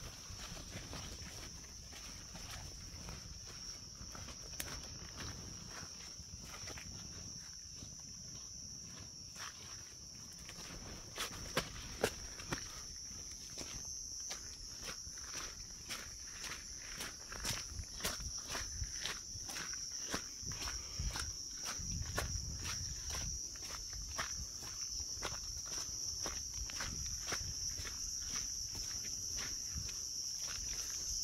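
Footsteps pushing through jungle undergrowth and along a path, irregular at first, then about two steps a second from midway on, with a few louder knocks a little before the middle. Under them runs a steady, high-pitched drone of night insects.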